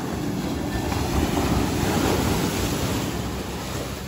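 Ocean surf: a wave breaking and washing in over shallow water, a loud rush that swells about a second in and eases off toward the end.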